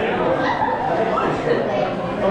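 Indistinct voices of several people talking at once, with some short high yelps.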